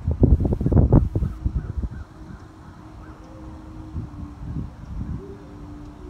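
Wind buffeting the phone's microphone in low rumbling gusts for the first second or so, then easing into a quieter stretch with a faint steady hum.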